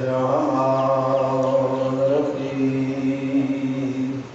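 A man's voice chanting one long held note into a microphone in the sung style of a Shia majlis recitation, the pitch steady with a slight waver partway through, breaking off at the end.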